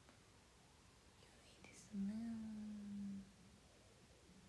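A young woman's voice: a faint breathy whisper, then a single low held 'mmm' hum for just over a second about halfway through.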